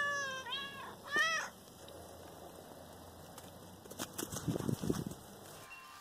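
A cat meowing, three short meows in the first second and a half, each bending in pitch. It is followed by a quiet stretch with a few faint low thuds about four to five seconds in.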